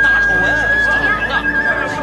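A man shouting out news to a crowded street, over a long held high tone that wavers slightly partway through.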